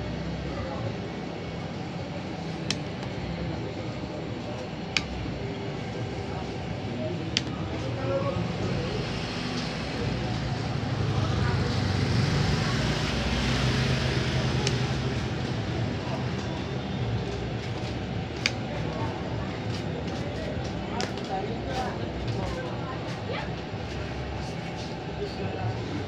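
Background voices too indistinct to make out and street traffic, with a vehicle growing louder and then fading through the middle. A few sharp clicks stand out.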